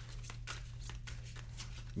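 A deck of tarot cards being shuffled by hand: quiet, irregular soft card flicks, several a second.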